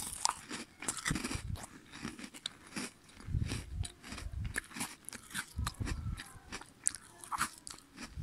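Close-up biting and crunchy chewing of a chocolate-coated snack bar: a quick run of crisp crackles, with heavier chewing bouts about a second in, around the middle and again near six seconds.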